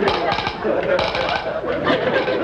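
Studio audience laughing in repeated waves.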